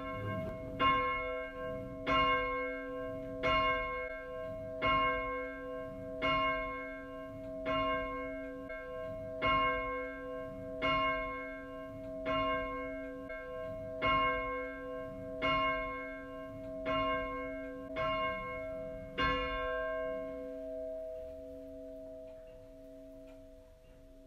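A single church bell tolling, about fifteen strokes of the same pitch at roughly one every 1.3 seconds, its hum ringing on and fading after the last stroke about 19 seconds in.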